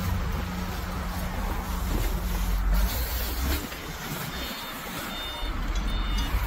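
Low, steady rumble of a motor vehicle engine running nearby, which drops away a little past halfway; faint, high, repeated beeps come in near the end.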